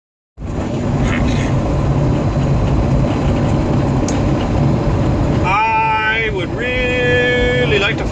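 Steady engine and road noise inside a truck cab on the move, starting just under half a second in with a low hum underneath.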